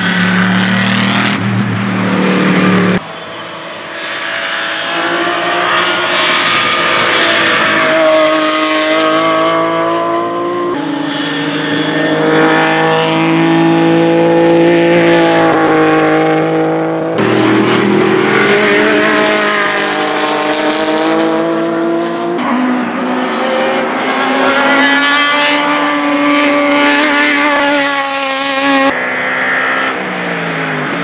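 Racing cars' engines at high revs in several cut-together trackside passes: a Mercedes-Benz SLS AMG GT3's V8 and a BMW M3 E36 GTR. Each engine note rises through the gears and sweeps down as the car passes, with an abrupt cut every few seconds.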